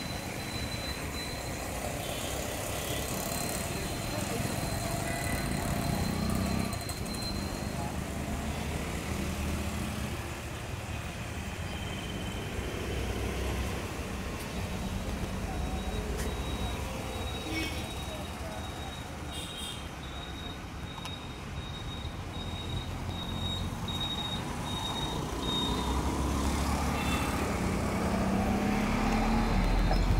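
Road traffic passing: a steady mix of engine rumble and tyre noise that swells and fades, louder near the end.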